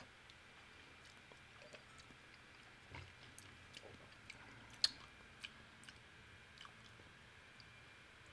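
A quiet room with scattered faint clicks and mouth noises as whiskey is sipped and tasted; the sharpest click comes about five seconds in.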